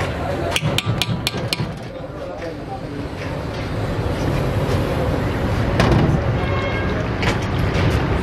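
A metal spoon knocks about five times in quick succession against a large aluminium cooking pot about a second in, while thick masala paste is being stirred. After that there is a steady low background hum.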